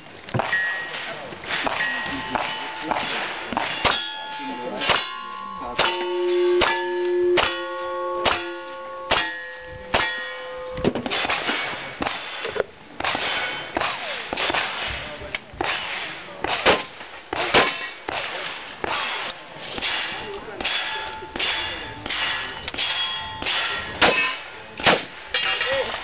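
A fast string of gunshots at steel plate targets, each hit followed by the clang and ringing of the struck steel; the ringing is most marked in the first half.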